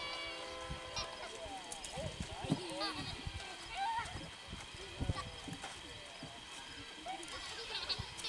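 Young children's voices squealing and calling out without clear words as they play, one drawn-out cry in the first second.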